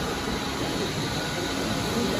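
Steady hiss and hum of fans in a crowded hall, with indistinct low murmuring voices underneath.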